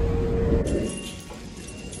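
Low rumble of a train's interior with a steady hum, cutting off suddenly about half a second in and giving way to quieter, even station ambience.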